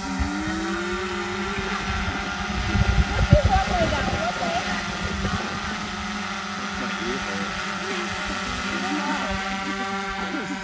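A steady hum with evenly spaced overtones, with faint voices over it and low rumbling knocks about three seconds in.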